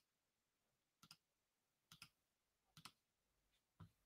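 Near silence with faint, sharp clicks, each a quick double click, coming about once a second, four or five times.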